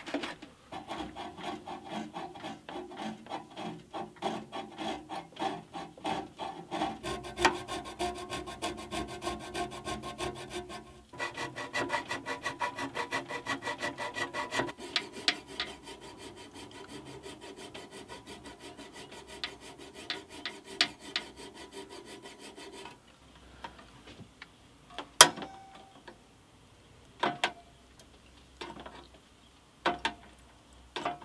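A hand file rasping back and forth on the enamelled steel of a bandsaw's blade-guide housing, about two to three strokes a second. About a third of the way in, the strokes take on a steady ringing metallic tone. They stop a little over two-thirds of the way through, leaving a few sharp metal clicks near the end.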